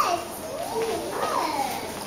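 Children's voices in the background, higher-pitched and quieter than the man's voice around them.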